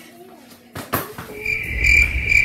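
A short thump just under a second in, then a steady high-pitched whine with a faint rapid pulsing, over a low rumble.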